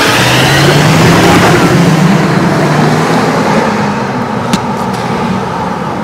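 Pickup truck engine accelerating away, its pitch rising over the first couple of seconds, then fading as it draws off, with a short click about four and a half seconds in.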